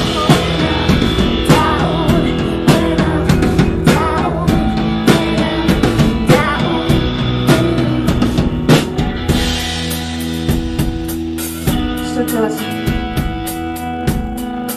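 Live rock band playing an instrumental passage: a drum kit keeps a steady beat under guitar and bass. The drumming thins out for a couple of seconds about ten seconds in, leaving the held guitar and bass notes.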